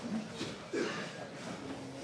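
Indistinct men's voices calling out from around the cage, with a short louder call a little under a second in.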